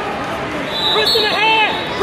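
Indistinct shouting voices over crowd noise, echoing in a large hall, loudest in one drawn-out call around the middle. A thin, steady high tone comes in under a second in.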